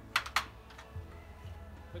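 Two sharp clicks about a fifth of a second apart as the two release tabs of the Demon FR Link helmet's removable chin guard let go and the guard is pulled down off the helmet.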